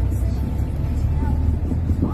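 Steady low engine and road rumble inside the cabin of a moving green minibus, with music playing faintly over it.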